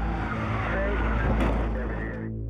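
Car tyres skidding on a slick, icy road, with wavering squeal over road noise and one sharp click about one and a half seconds in.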